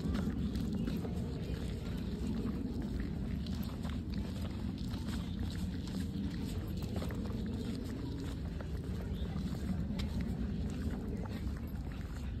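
Footsteps on bare granite rock while walking uphill, a few faint scuffs and taps over a steady low rumble.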